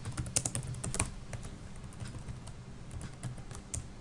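Typing on a computer keyboard: a quick run of keystrokes in the first second or so, then a few scattered clicks, over a faint low hum.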